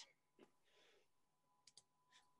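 Near silence: faint room tone with a soft breath-like hiss about three-quarters of a second in and two faint clicks near the end.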